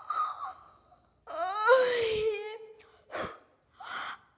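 A boy's voice making a long wailing cry that rises in pitch and then sinks, between short breathy gasps.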